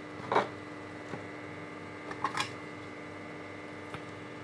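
Quiet workbench handling: two brief soft rustles as wires and small tools are picked up, one just after the start and one a little past the middle, over a steady low hum.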